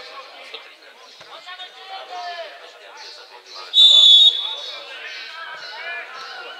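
A football referee's whistle blown once, a shrill single blast of about half a second, about four seconds in, stopping play as a player goes down.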